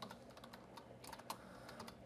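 Faint, quick keystrokes on a computer keyboard: a word being typed, the clicks coming in an irregular run.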